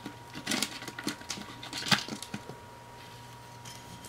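Light, scattered clicks and knocks from a hand handling a freshly opened glass soda bottle, the sharpest about two seconds in.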